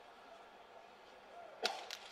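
Quiet room tone of a near-empty ice arena, broken about a second and a half in by a sharp knock, with a weaker one a quarter-second later.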